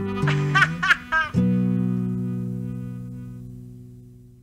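Song ending on guitar: a few short bending notes, then a final chord struck about a second and a half in that rings and slowly fades away.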